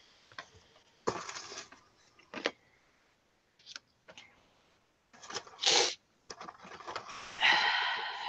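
Paper rustling and sliding in several short bursts as collage paper is laid onto a journal page and pressed flat by hand.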